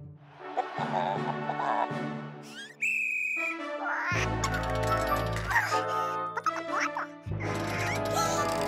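Cartoon soundtrack: a noisy hiss with warbling effects, a short steady high tone about three seconds in, then children's background music with a bass line from about four seconds in, with cartoon-chicken voice sounds mixed in.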